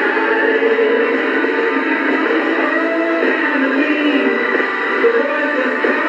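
Music playing through the small built-in speaker of a vintage Panasonic flip-clock radio, sounding thin and without bass.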